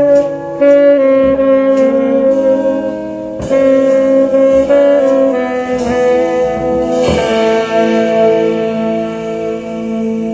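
Jazz quartet closing a tune: two saxophones hold notes in harmony over electric guitar and drums. About seven seconds in comes a cymbal wash and a final held chord that fades toward the end.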